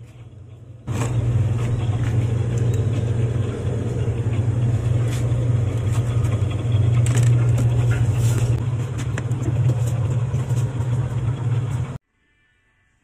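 Loud, steady low electrical hum of a refrigerator's freezer running with its door open, with scattered light clicks. The hum jumps up about a second in and cuts off suddenly at the end.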